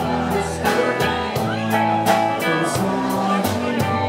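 Live rock band playing: electric guitars, a violin-shaped bass guitar and a drum kit keeping a steady beat.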